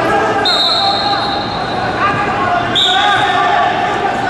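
Voices shouting and echoing in a large sports hall. A long, high, steady whistle-like tone starts about half a second in. About three seconds in it gives way to a louder, sharper tone at the same pitch.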